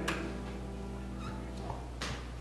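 Last of the service music dying away into quiet church room tone with a steady low electrical hum, a short click right at the start.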